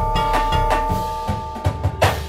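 Marching band show music: held wind and brass chords over repeated drum strokes, with a loud accented hit at the very end.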